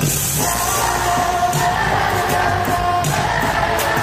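Live pop concert music heard through an arena sound system: a sung note held for a couple of seconds over a steady drum beat, with the audience singing along.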